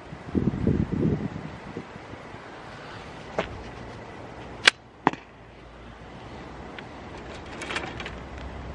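Slingshot with an arrow attachment handled and drawn, with rustling in the first second. About four and a half seconds in, its rubber bands are released with one sharp snap as the arrow is launched, followed half a second later by a second, quieter knock.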